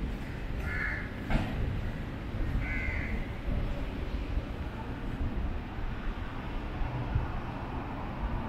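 A bird gives two short, harsh calls about two seconds apart over a steady low background rumble.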